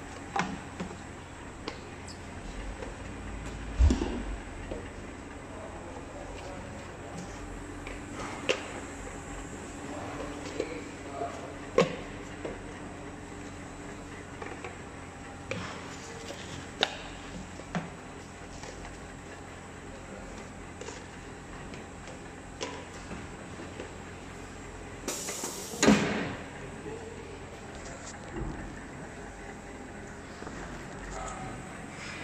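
Checkweigher conveyor running with a steady machine hum, containers knocking and clicking on the belts now and then. Near the end, a short hiss of air and then the loudest knock.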